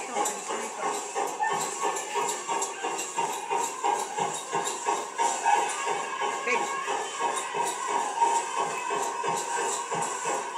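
Powwow song: a steady drumbeat with group singing, danced to.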